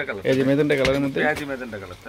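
A man talking, in the voice of an ongoing sales pitch.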